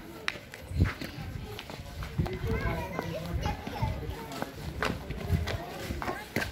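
Children's voices chattering and calling, with scattered sharp clicks and a low thump about a second in.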